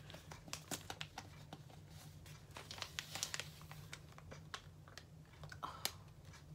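Soft plastic packet of makeup-remover wipes crinkling and crackling as it is handled and opened, with many small sharp crackles that are busiest around the middle and a sharper click near the end.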